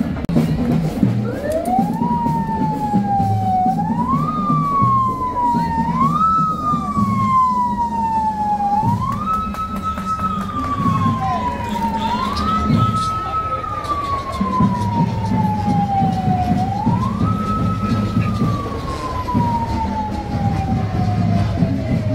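A vehicle siren repeatedly winding up quickly and then sliding slowly down in pitch, about six times, the last fall still going at the end. A steady low rumble runs underneath.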